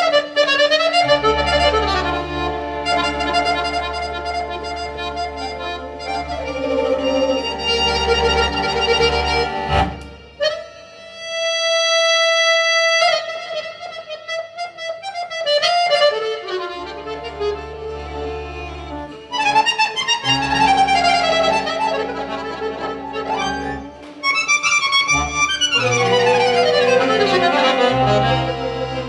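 Piano accordion and violin playing a duet, the accordion to the fore with held chords over a bass line and quick runs. The music thins briefly around ten seconds, and a fast descending run comes near the end.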